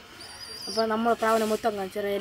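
A person's voice chanting one drawn-out syllable over and over in a sing-song, each note about a third to half a second long, with a faint short high chirp just before it starts.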